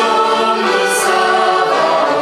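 Small group of young singers, women and a boy, singing a Christian hymn in Romanian with accordion accompaniment, holding sustained notes in harmony.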